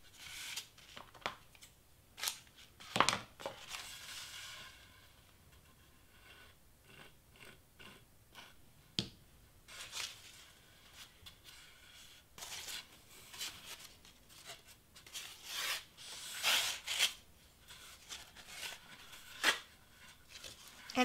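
Paper streamer rustling and crinkling as it is cut with scissors and wrapped around a wreath form. A few sharp clicks stand out, the loudest about three seconds in.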